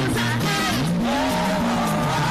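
Live gospel band music, loud and steady. An electric bass line slides up in pitch about a second in, under a wavering melody line higher up.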